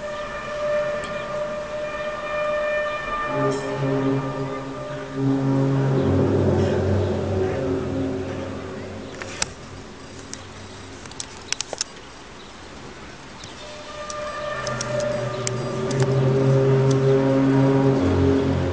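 An unexplained loud, low drone in the air: several long notes held together like a siren or horn, swelling about three seconds in, dying down around the middle, then swelling back up from about fourteen seconds. A few sharp clicks come through in the quieter middle stretch.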